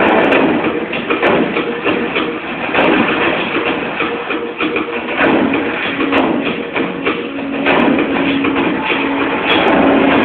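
Film soundtrack music played loud through cinema speakers, dense and continuous, with a held low note coming in about six seconds in.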